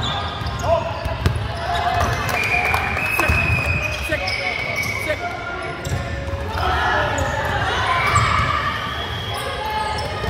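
Volleyball being played in a large sports hall: two sharp ball hits about a second in, and the ball thudding on the wooden floor, over players' voices calling and shouting across the court.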